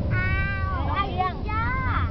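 A toddler girl singing in a high, thin voice: one long held note, then a note that rises and falls near the end. Under it runs the steady low drone of the moving car.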